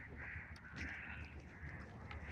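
Faint bird calls, several short harsh ones repeating about every half second.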